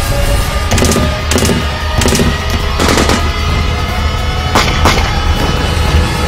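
Action-trailer soundtrack: dramatic music with a heavy low rumble, punctuated by a string of sharp gunshots, a few single and a few in quick pairs, spread across the few seconds.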